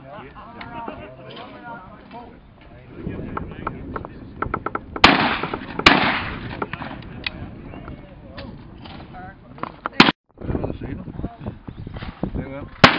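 Shotgun fired twice at clay targets: two loud shots about a second apart, each followed by a short echo.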